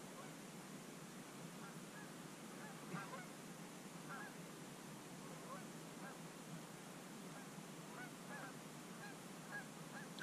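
Faint honking of distant geese: many short calls scattered through, over a steady low hiss of outdoor background.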